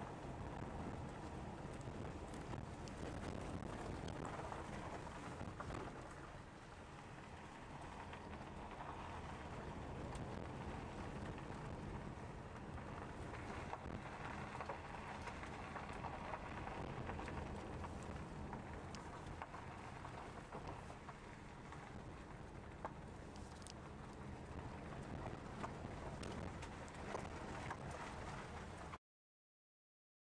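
Steady road and engine noise heard from inside a moving car.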